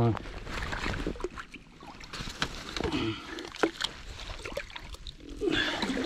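Shallow water sloshing and splashing as a hooked blue catfish is landed at the water's edge, with irregular knocks and rustling from handling among sticks and dead leaves.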